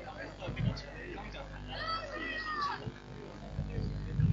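Indistinct voices of spectators, with a high, drawn-out call or shout a little after the middle.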